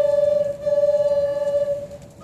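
A solo wind instrument playing a slow melody of long, held notes with a clear, pure tone. A brief pause between phrases comes near the end.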